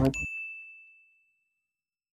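A single bright bell ding, the notification-bell sound effect of an animated subscribe button as its bell is clicked. It strikes once and rings out, fading over about a second and a half.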